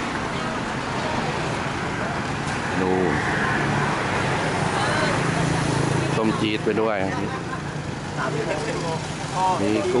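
Steady traffic noise with a vehicle engine idling, a low hum that grows stronger from about three seconds in, and voices talking at times.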